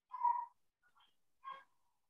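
A few short, pitched animal calls in a row, the first one loudest.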